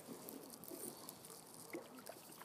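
Faint trickling and gurgling of a shallow brook.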